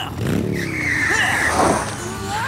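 Cartoon motorcycle sound effects: the engine revs up, then a high tyre screech lasts about a second, ending in a short burst of noise.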